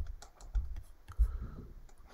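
Pen stylus tapping and sliding on a drawing tablet during handwriting: irregular light clicks with a few dull knocks, thinning out near the end.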